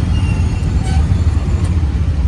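Steady low rumble of a moving auto-rickshaw, heard from inside its open passenger cabin.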